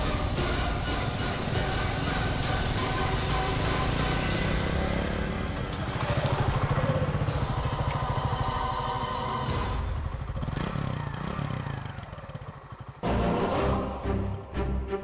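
Background music with a steady beat, mixed with a motorcycle engine running as the bike rides along. The sound dips briefly near the end, then the music comes back in loudly.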